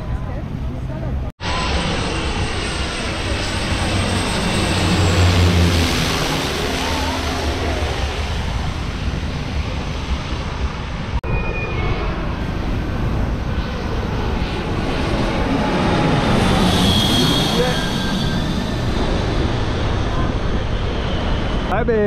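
Private jet passing low overhead on its landing approach: loud, continuous engine noise whose pitch sweeps as the aircraft goes over. The sound breaks off abruptly for an instant about a second in.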